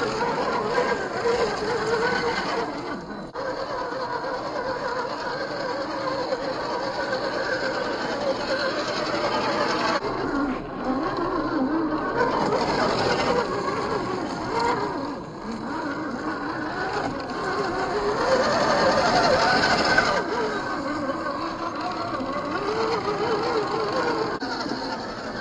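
Brushed 540 45T electric motor and gear train of a 1/10 scale RC rock crawler whining as it climbs rocks and mud. The pitch wavers up and down with throttle and load, with brief dips where the motor eases off.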